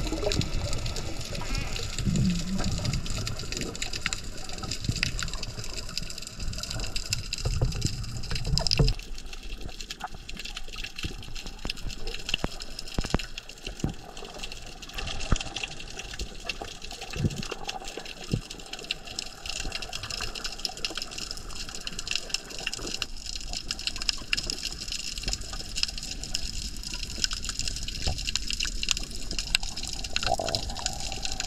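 Underwater sound of the sea picked up by a submerged camera: a continuous watery rush crowded with small crackling clicks. Heavier low swishing of water movement fills the first nine seconds or so and then eases.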